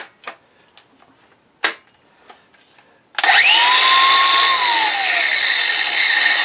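DeWalt DCG412B 20V cordless 4½-inch angle grinder switched on about three seconds in, spinning up quickly with a rising whine and then running free with no load on the disc. Before it, a few light handling clicks and one sharp click.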